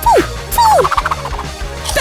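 Two quick whistle-like glides, each falling steeply in pitch, one right after the other, over background music.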